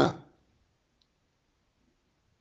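A pause in a man's speech: his last word trails off at the start, then near silence with one faint click about a second in.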